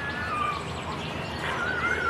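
Birds calling: thin warbling whistles that waver and glide upward, over a steady outdoor background hiss.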